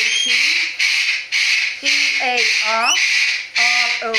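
Lorikeets screeching, a harsh, almost unbroken din in several long bursts with short gaps between them. A person's voice sounds over them in the middle and at the end.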